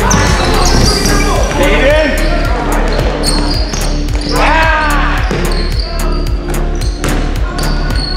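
Basketball bouncing repeatedly on a hardwood gym floor as players dribble up the court, with shouting voices and short high sneaker squeaks.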